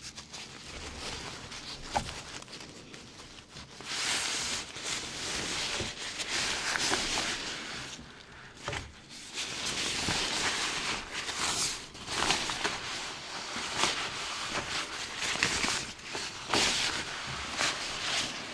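Close-miked rustling of a hairdresser's cloth cutting cape being draped and adjusted around the neck, in repeated soft swells of fabric noise with a few faint clicks.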